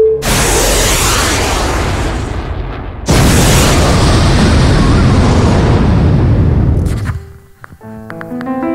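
Rocket-launch sound effect from an animated intro: a sudden rushing blast of noise, then a second, louder blast about three seconds in that holds and dies away near the end. Electric piano notes begin just at the close.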